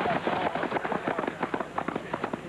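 Footfalls of several runners sprinting past on a running track: a rapid, irregular patter of many short thuds.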